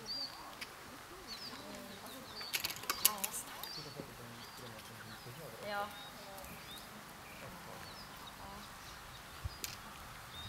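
Small birds chirping and singing in the background, with a brief cluster of sharp clicks about two and a half to three seconds in.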